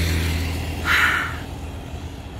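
A motor vehicle passing on the road beside the path: a steady low engine hum that fades away during the first second, then a short hiss about a second in.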